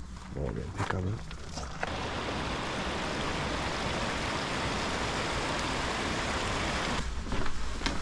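A shallow, rocky stream running: a steady rush of water that comes in suddenly about two seconds in and stops just as suddenly about a second before the end.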